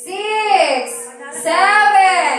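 A young child's high voice in long wails, each rising and falling over about a second, repeated one after another.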